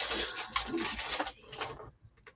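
Paper rustling and shuffling as sheets are handled and sorted. It runs for about a second and a half, then a few light clicks.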